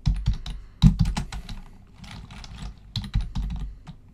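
Typing on a computer keyboard: quick irregular key clicks in two runs, one in the first second or so and another about three seconds in, with a lull between.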